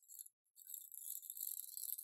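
A small adhesive tape roller being run across a strip of paper: a faint, steady, high-pitched hiss that starts about half a second in.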